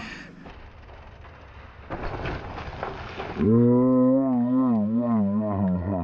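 A man's long, drawn-out, wavering shout, held for about two and a half seconds from about halfway through.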